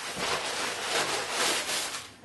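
Cuben fibre stuff sack and the clothing packed in it rustling and rubbing as it is handled and unpacked, a continuous dry crinkling rustle.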